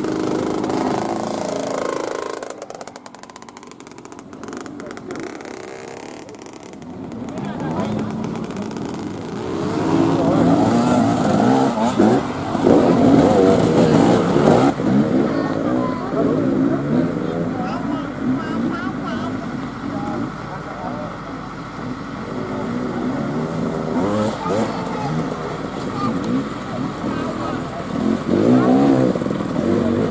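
Enduro dirt bike engines revving under load as riders climb and jump, with people's voices mixed in. It eases off for a few seconds early on and is loudest in the middle.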